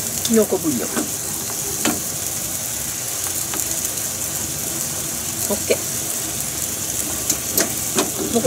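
Tomato sauce in olive oil bubbling and sizzling in a frying pan while it is reduced, a wooden spatula stirring it through, with a couple of sharp taps.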